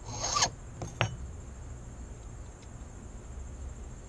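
A hand file rasping once across the cut of a brass key blank, taking a little more depth off the first cut while impressioning a key. About a second in comes a single sharp click as the file is set down on the wooden rail.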